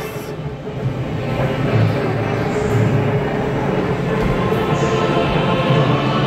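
Dark ride soundtrack music playing over the steady rumble of the ride car running along its track.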